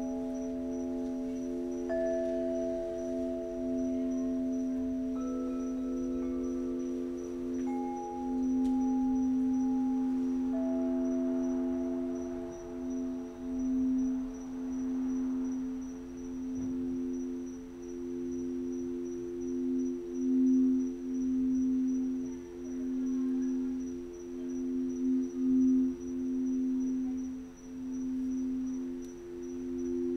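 Several singing bowls sounding together: a few sustained tones layered on one another, the lowest and loudest pulsing slowly in and out. Fresh, higher tones join every few seconds and hold for a while before fading.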